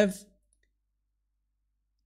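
The last spoken word trails off in the first moment, then dead silence: the audio drops to nothing for the rest of the pause.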